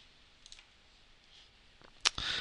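Near silence with a faint computer mouse click about half a second in and another fainter click near the end.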